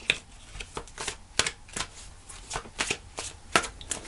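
A deck of oracle cards being shuffled by hand: a run of irregular light clicks and slaps of cards against each other.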